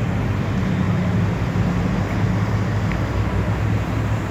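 A steady low hum and rumble, even in level throughout.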